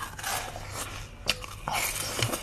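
Biting and sucking on a bun-shaped piece of coloured ice held against the lips, with a sharp crack about a second and a quarter in.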